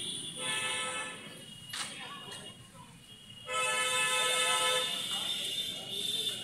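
A vehicle horn honks twice, each a steady held tone of a second or more, the second starting about three and a half seconds in.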